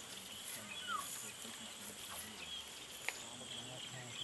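Quiet wetland ambience: scattered short bird chirps and whistles over a steady high-pitched drone, with a single sharp click about three seconds in.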